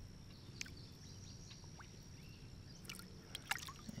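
Faint river water splashing and trickling around hands working in the water to unhook a carp held in a landing net, with a few small splashes or drips near the end.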